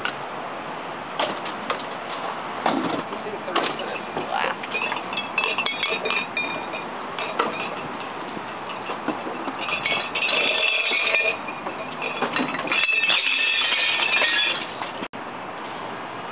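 Glass bottles clinking and clattering as they are tipped into a dumpster of glass recycling, in two bursts: a short one about ten seconds in and a longer one about thirteen seconds in. Scattered clicks and knocks of bottles being handled come before.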